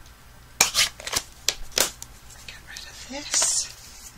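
A handful of sharp clicks and knocks from a stamp pad being snapped shut and lifted off a hard work table, spread over about a second.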